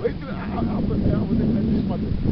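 Low, steady rumble of a vehicle passing on the adjacent road, swelling slightly about half a second in.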